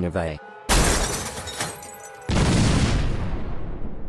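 Two sudden loud crashing blasts, like explosion sound effects: one under a second in, then a second, heavier one just past halfway that fades away slowly.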